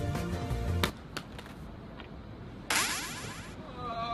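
Background music that drops away about a second in, followed by a few light sharp knocks and, near three seconds, a short bright hissing burst.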